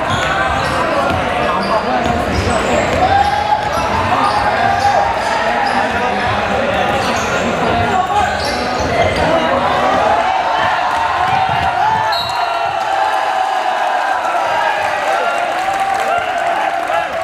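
Basketball game in a large sports hall: many overlapping voices of players and spectators shouting, over the thuds of a basketball bouncing on the wooden court and occasional short high squeaks.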